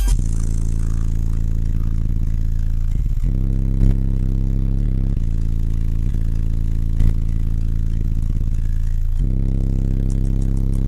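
Very deep, sustained bass notes from a pickup's car-audio subwoofer system playing a bass track at high volume, the pitch stepping every second or so, with the cab rattling and a couple of short thumps about four and seven seconds in.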